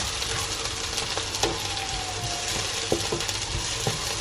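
Onions and freshly added garlic sizzling in hot oil in a frying pan, with a steady hiss, while a spatula stirs them, knocking against the pan a few times.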